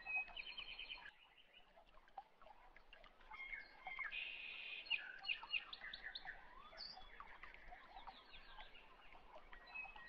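Small birds chirping and trilling, fairly faint, in quick runs of repeated notes, busiest around the middle.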